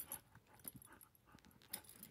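Faint scattered rustles and small clicks as a dog comes in to mouth at a toy held in a person's hand; mostly near quiet.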